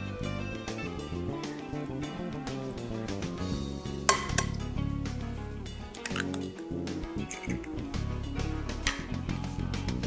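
Background acoustic guitar music, with a few sharp clinks of a whisk and an egg against a glass mixing bowl, the loudest about four seconds in, as eggs are added to chocolate cake batter and whisked in.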